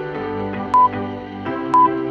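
Workout interval timer's countdown beeps: two short, high, single-pitch beeps a second apart, the loudest sounds, over soft background music.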